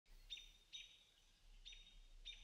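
Faint bird chirps: three short, high calls spaced about half a second to a second apart.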